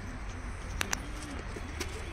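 A dove cooing: a series of soft, low, arching coos, with two sharp clicks about a second apart.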